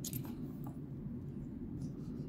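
A few faint, sharp plastic clicks as a linear mechanical keyboard switch's housing is pried apart by hand, over a steady low hum.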